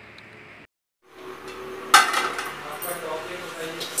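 Stainless-steel thali plate and bowl clinking and knocking as a meal plate is set, with one sharp clink about two seconds in that rings on briefly. A short break of dead silence comes about a second in.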